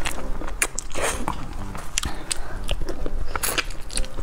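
Close-miked biting and chewing of braised meat, with many irregular mouth clicks and smacks.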